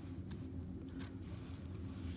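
Faint ticks and rustles of small paper stickers being picked up off a wooden table and gathered into a stack by hand, over a low steady hum.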